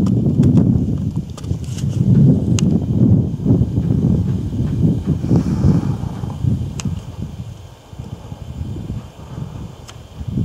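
Wind buffeting the camera microphone: a loud, uneven low rumble that rises and falls, easing off in the last couple of seconds, with a few faint clicks.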